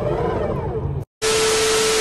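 TV-static glitch sound effect: an even hiss with a steady beep tone that cuts in about a second in, after a brief dropout, following a stretch of faint voices.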